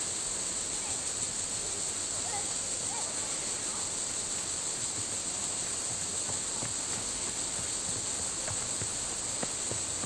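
Steady, high-pitched insect chorus droning without a break, with a few faint short chirps over it.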